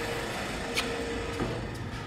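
Steady street traffic noise with a faint steady hum, and one short click about three quarters of a second in.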